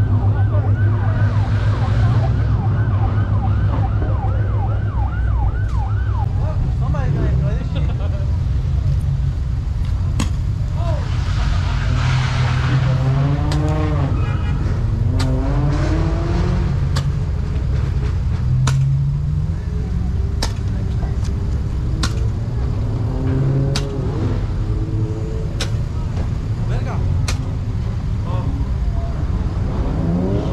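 Car engine and road noise heard from inside a car moving in slow traffic, with voices. Sharp clicks come about every second and a half through the second half.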